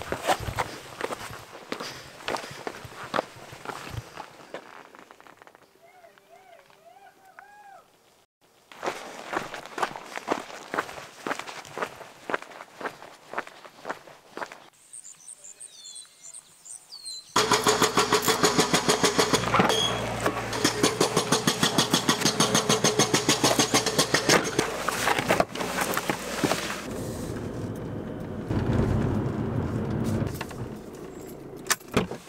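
Footsteps on limestone rock with a few bird calls between them, then, from a little past halfway, a sudden much louder steady sound of a car driving: engine and tyre noise.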